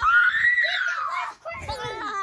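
A child's high-pitched scream that rises and then falls in pitch over about a second and a half, followed near the end by a child's voice sliding down in pitch.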